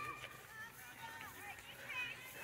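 Faint, distant voices of children and adults talking and calling on an open field.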